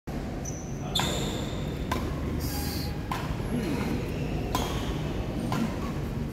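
Badminton racquets striking a shuttlecock back and forth in a rally: five sharp hits about a second apart, each with a brief ringing ping from the strings.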